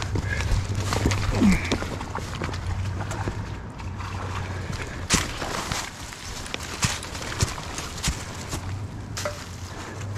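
Footsteps climbing a rocky bank covered in dry leaves and grass: irregular crunching and rustling, with scattered sharp crackles as leaves and twigs are stepped on.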